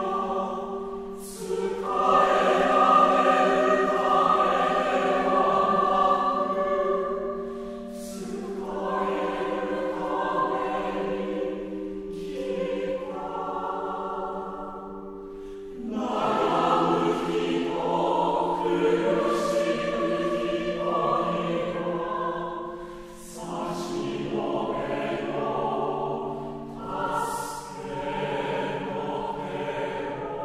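Choir singing slow sacred music in long held notes, phrase by phrase, with short breaks between phrases.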